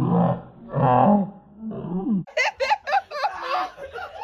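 Deep, hearty laughter in long bouts, then, after an abrupt cut about two seconds in, higher-pitched laughter and chatter.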